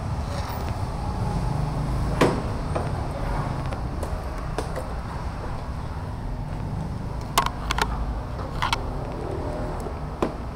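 Steady low rumble of motor vehicle noise, with a sharp click about two seconds in and a few short metallic clinks near the end.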